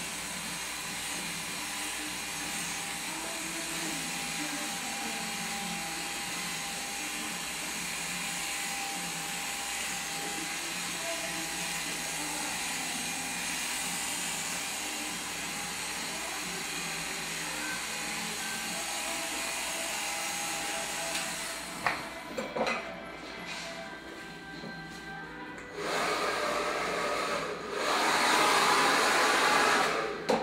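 Corded electric hair clipper running steadily as it cuts hair. About 21 seconds in the steady motor sound gives way to a few sharp clicks, then two louder stretches of rustling noise near the end.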